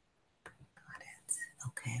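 A woman's soft whispering and murmuring, ending in a quiet spoken "okay."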